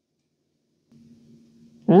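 Silence, then a faint steady hum from about a second in; a man begins speaking just before the end.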